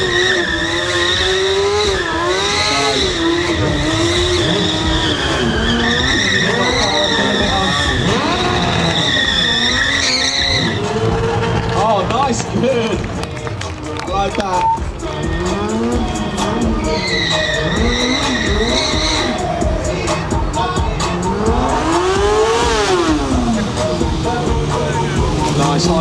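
Stunt motorcycle engine revving up and down as the rider drifts and circles, with a high rear-tyre squeal through the first ten seconds and again around the eighteenth second.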